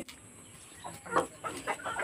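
Chickens clucking faintly: a few short clucks in the second half.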